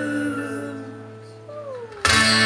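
Acoustic guitar chord ringing out and fading, with a short note sliding down in pitch near the end. A loud strum starts the guitar again right at the close.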